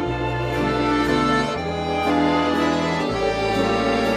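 Instrumental music led by an accordion, playing sustained chords over a bass line that changes note about every second and a half.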